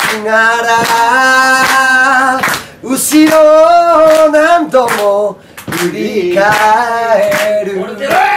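Male voice singing a cappella in long held notes, with hand claps keeping a steady beat of about two claps a second.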